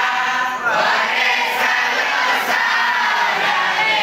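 Voices chanting together in long, sliding melodic phrases without a break.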